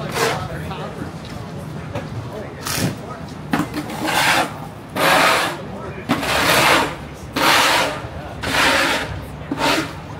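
Rhythmic scraping strokes, about one a second, each a rasping rush of noise lasting around half a second to a second.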